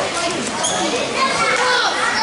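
Several children's voices chattering and calling at once, with no clear words.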